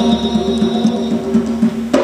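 Live band playing an Afro-Brazilian groove: hand drum and drum kit keep a quick, even beat under a held chord, closing on a sharp accented hit near the end.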